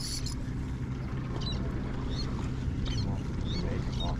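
Boat motor running with a steady low hum, with a few faint, short high chirps scattered through it.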